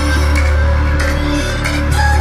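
Electronic chill-out music from a mix: a deep steady bass with a pulse, stepped synth notes above it and short percussive hits every second or so.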